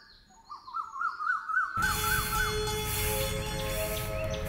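A bird calling: a quick run of repeated rising-and-falling chirping notes, about four a second. Near two seconds in, music starts suddenly and loudly with sustained notes and carries on.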